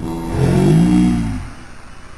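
A cartoon character's drawn-out, musing "hmm", rising then falling in pitch, lasting about a second.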